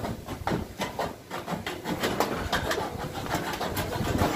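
Irregular clicks and light metallic knocks of sheet-metal roofing being worked with a hand tool.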